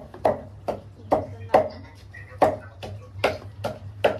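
Kitchen knife slicing a cucumber on a white plastic cutting board: a steady run of short chops, about two to three a second.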